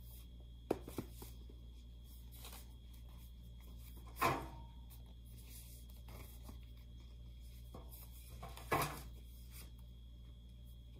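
Hardcover books being set down and stood up on the bottom shelf of a metal rolling cart. A short sharp tap comes just under a second in, and two louder knocks follow, one about halfway and one near the end, over a faint steady low hum.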